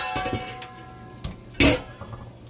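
Metal dishes being moved about in a stainless-steel kitchen sink: a clank that rings for about a second, then a second, louder knock near the end.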